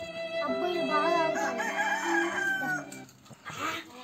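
A rooster crowing over background music with held chords; the crow rises about half a second in and trails off with a falling glide, and the music stops abruptly about three seconds in.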